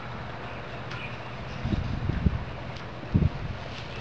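Steady outdoor hiss with a few short, low rumbles of wind on the microphone, about halfway through and again near the end.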